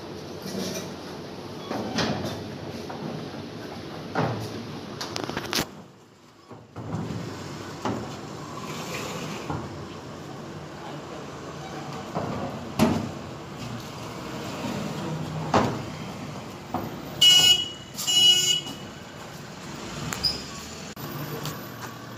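Scattered knocks and bumps of equipment being handled over a steady background hum, with two brief high squeaks about three quarters of the way through.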